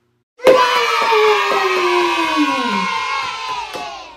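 A group of children cheering a long "yay" together, starting suddenly about half a second in, the voices sliding down in pitch and fading out near the end.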